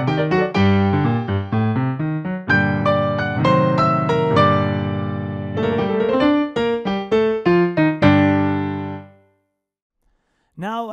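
Yamaha digital piano played solo: quick running notes over a moving bass, a chord held for a few seconds in the middle, then more notes and a closing chord that dies away about nine seconds in, ending the piece.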